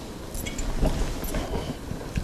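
Butter faintly sizzling as it melts in a hot stainless-steel sauté pan, with a few light knocks and clinks.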